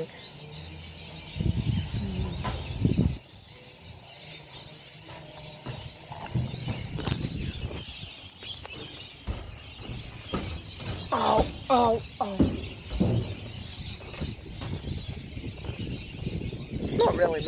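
Rustling and knocks from a phone being handled and moved around, with bird calls in the background, several of them close together near the end.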